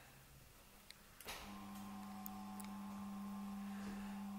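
Small electric motor of a scale model of the Leviathan telescope whining steadily as it raises the model's tube. The whine starts about a second in and slowly gets louder, with a few faint clicks.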